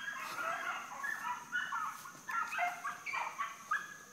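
A pack of rabbit hounds baying in full cry while running a rabbit hard, several high voices overlapping continuously. One dog has a high-pitched squealing mouth.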